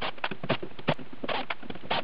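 Irregular clicks and knocks, about ten in two seconds, as a cordless drill and loose screws are handled against a microwave oven's sheet-metal case during screw removal.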